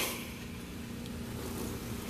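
Faint scratch of a pen drawing a straight line on a paper pad, over a steady low electrical hum.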